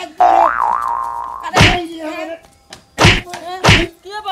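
A cartoon 'boing' sound effect with a wobbling pitch, followed by three loud comic thumps, the last two close together.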